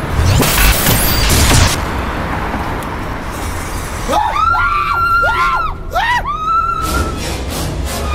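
Edited film soundtrack: music with a loud crashing hit about half a second in, then wavering tones that rise and fall repeatedly over a held note in the second half.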